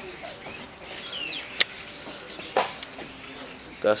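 Small birds chirping in short, sliding calls, with a single sharp click about a second and a half in.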